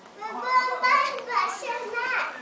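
A young child's high-pitched voice calling out loudly without clear words: a drawn-out call of about a second, followed by shorter calls.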